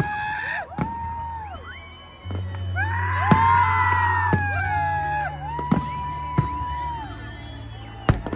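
Aerial fireworks bursting in a string of sharp, scattered bangs over music with a steady bass line and sustained gliding tones, with some crowd noise.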